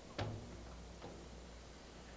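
Sheet-metal cabinet door of the drill grinder's base swung shut, latching with a single sharp click about a fifth of a second in, then a faint tick about a second in, over a low steady hum.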